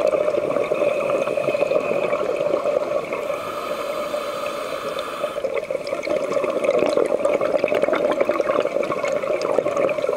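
Underwater sound picked up by a diver's camera: a steady rush of water with dense fine crackling, dipping a little quieter for a couple of seconds around the middle.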